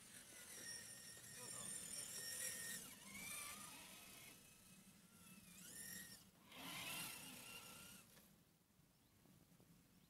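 Electric motor and gearbox of an RC scale crawler truck whining faintly as it climbs out of a creek and up a grassy bank, the pitch rising and falling with the throttle. It dies away about eight seconds in.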